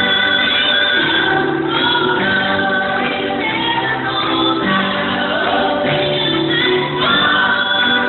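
Women singing a gospel song through microphones and loudspeakers, with long held notes.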